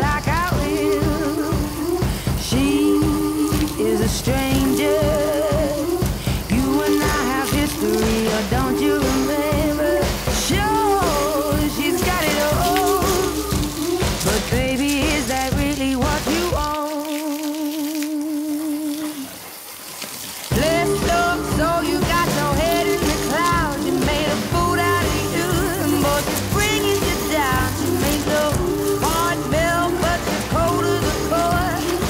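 Background pop song with a steady beat and melody. The drums and bass drop out for a few seconds past the middle, then come back.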